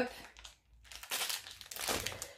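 Plastic food wrappers crinkling as packets of biscuits are handled. It starts about a second in, after a brief pause.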